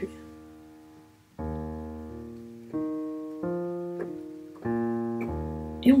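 Piano playing a slow left-hand E-flat major arpeggio in octaves, one note at a time, each left to ring. It goes E-flat, B-flat, the E-flat an octave higher, the F above, then back down E-flat, B-flat and the low E-flat, starting about a second and a half in.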